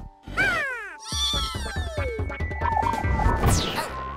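Cartoon sound effects over background music: two long falling, wailing pitch glides, then a rapid run of thumps and knocks with heavy low booms as a cartoon character tumbles and crashes to the ground.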